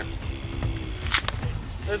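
A knife slicing through an apple on a wooden cutting board, with one short crisp cut about a second in, over soft background music with a few held notes.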